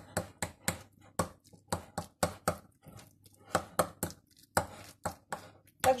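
A metal fork clicking and scraping against a glass dish while stirring grated cheese into natural yogurt, in quick irregular clicks about four a second.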